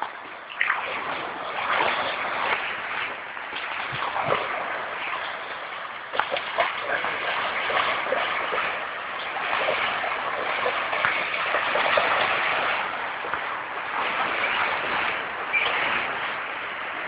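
Water splashing and sloshing without a break, with many small, irregular splashes.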